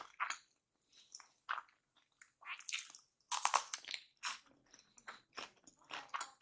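Close-miked chewing and biting of kimchi fried rice with lettuce, in irregular wet, crunchy bursts, loudest about three and a half seconds in.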